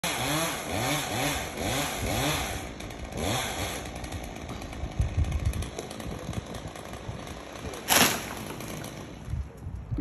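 Chainsaw engine revving in quick repeated blips for the first few seconds, then running rougher and lower. A short loud burst of noise comes near the end.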